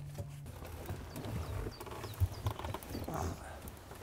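A golf cart's steady low motor hum cuts off about half a second in as the cart stops. Irregular knocks, creaks and footsteps follow as people climb out of the cart onto the pavement.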